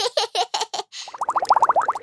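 Cartoon sound effects: a quick run of short, light hits, then from about a second in a fast, wobbling burble of many small rising warbles.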